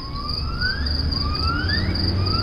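Insects chirring steadily, with a thin whistle that twice rises in pitch over about a second and then breaks off.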